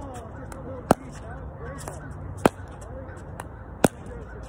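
Three sharp pops of a plastic pickleball against a paddle and the hard court, about a second and a half apart; the last, near the end, is the paddle striking the ball.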